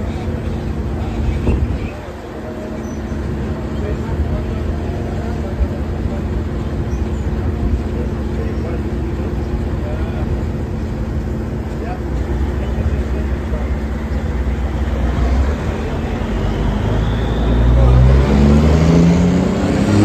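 A paratransit minibus's engine idling steadily at the kerb. Near the end a vehicle engine revs up, rising in pitch and growing louder.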